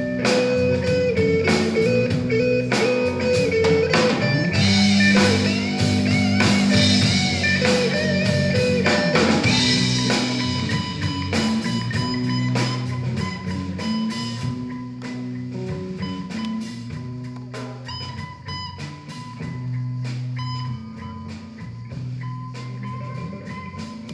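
A live blues band plays an instrumental passage: electric guitars over bass guitar and a drum kit. The playing grows quieter over the second half.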